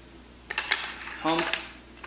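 A quick run of metallic clicks and clinks about half a second in, from a Mossberg 500 shotgun's forend and its steel action bars being handled and fitted to the gun.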